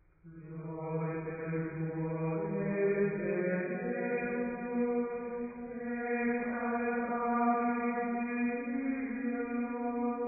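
Chant sung in unison: long held notes that step slowly up and down in pitch, beginning about half a second in after near silence.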